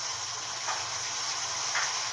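A steady hiss with no speech, like running water or something sizzling, at a moderate level.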